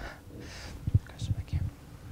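Soft, indistinct murmured voices and breathy whispering, with a few short low sounds in the second half, one sharply louder about a second in.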